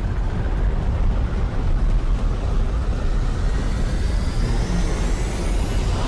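Film-trailer sound design for a giant sandworm rising out of the desert sand: a loud, deep rumble. Thin high tones rise over it in the last two seconds, and the rumble cuts off suddenly at the end.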